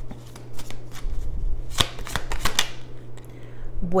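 A deck of tarot cards being shuffled and handled by hand: a run of quick, light card clicks and riffles, busiest about two seconds in.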